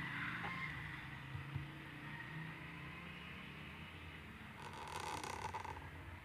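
Calligraphy pen scratching across paper for a little over a second near the end, as a letter stroke is drawn. Otherwise there is only a faint low hum.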